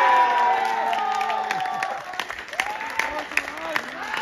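Sideline spectators shouting and cheering as a try is scored from a driving maul, the voices held and overlapping. The shouts fade about halfway through and give way to scattered hand clapping.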